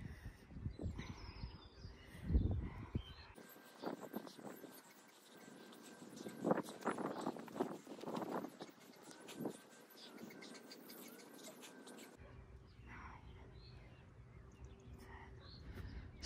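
Faint outdoor background: irregular gusts of wind noise with faint distant bird chirping.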